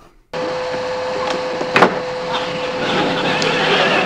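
Steady whirring hum of a salon hood hair dryer running, starting abruptly just after the beginning, with a single sharp click a little under two seconds in.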